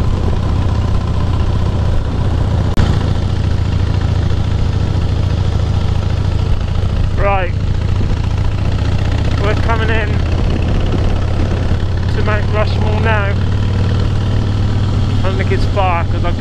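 Harley-Davidson Heritage Softail's V-twin engine running steadily while cruising down the highway, with wind noise on the microphone. A single sharp click about three seconds in.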